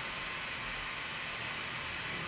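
Steady background hiss with no distinct events: room tone and microphone noise.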